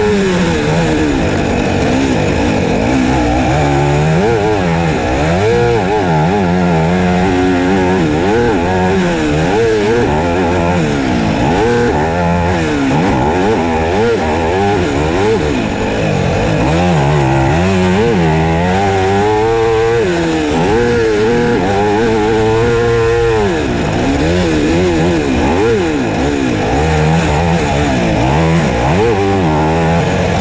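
Husqvarna FC250 four-stroke single-cylinder motocross engine at race pace, loud and close, its pitch rising and falling again and again as the throttle is opened and closed.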